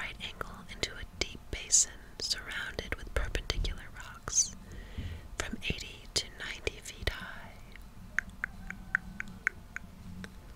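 Soft close-miked whispering with wet mouth sounds and sharp tongue clicks, ending in a quick, even run of about seven tongue clicks.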